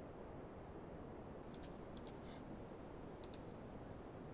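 Computer mouse clicking three times, starting about a second and a half in, each click a quick double tick, over a faint steady background hiss.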